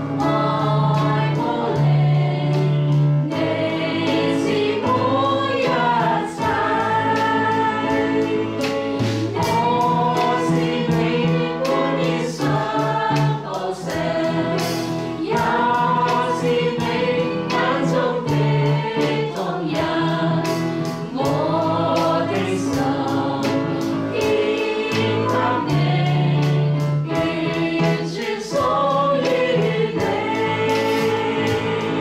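A Chinese worship song sung to electronic keyboard accompaniment, the voices moving in long phrases over held bass notes.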